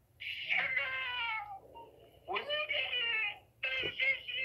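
A high-pitched, voice-changed caller's voice coming over a phone call in three drawn-out, wordless-sounding phrases, each sliding down in pitch, close to a cat's meow.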